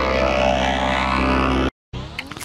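Effects-processed electronic logo music: a steady, buzzing drone of stacked held tones that cuts off abruptly near the end, followed by a moment of silence.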